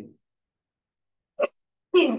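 A man's lecturing voice trails off, followed by more than a second of dead silence broken by one very short voiced sound from him, a catch of the voice, before his speech starts again at the end.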